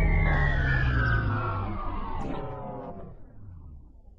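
A Windows system jingle run through a slowing pitch effect: its notes slide steadily down in pitch and grow duller, fading out towards the end.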